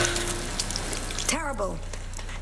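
The tail of a held music chord dies away in the first half second, leaving a low hiss with a few faint clicks of a metal spoon at a pot. About a second and a half in, a woman makes a short vocal sound that falls in pitch.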